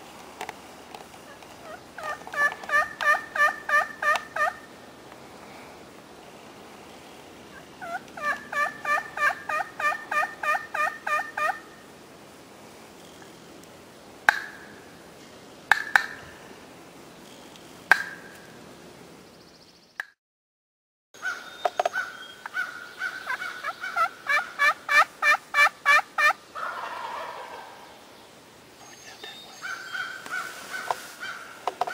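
Wild turkey yelping: three runs of about ten quick, evenly spaced yelps, with a few single sharp notes between them.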